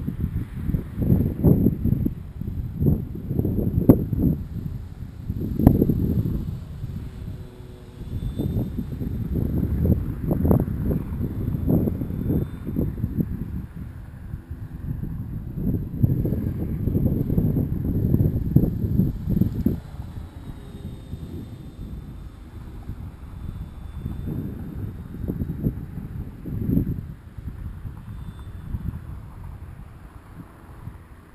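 Gusty wind buffeting the microphone in uneven surges. Behind it, a faint high whine comes and goes a few times: the distant electric RC plane's brushless motor and three-blade prop.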